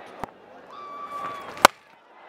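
A cricket bat striking the ball: one sharp crack a little before the end, over faint stadium background noise.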